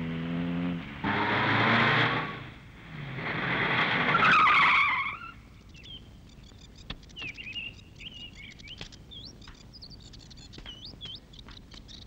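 A taxi's engine running, then its tyres screeching in two long skids as it brakes to a stop. After that, birds chirping steadily.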